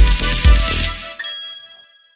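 Commercial jingle music with deep bass hits that stops about a second in, followed by a bright bell-like ding sound effect that rings out and fades to silence.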